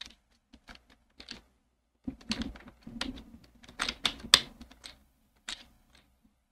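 Clicking and tapping on a computer keyboard and mouse. A few scattered clicks come first, then a quick run of keystrokes from about two seconds in that lasts some three seconds, and one last click near the end.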